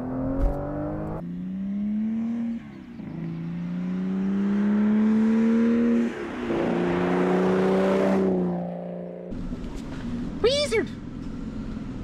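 Aston Martin Vanquish's 5.9-litre V12 accelerating hard through the gears: the engine note climbs, drops at two quick upshifts of its automated-manual paddle-shift gearbox, climbs again and then fades away. Near the end, workshop background noise with a brief voice.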